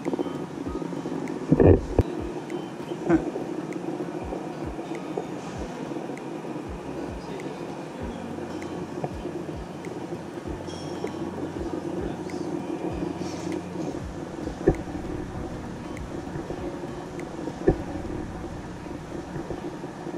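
Steady low room noise of a large exhibition hall, with a few short knocks: the loudest about two seconds in, others about three, fifteen and eighteen seconds in.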